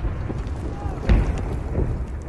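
Low, steady rumble of a wartime trench soundscape, with a dull boom about a second in: distant shellfire.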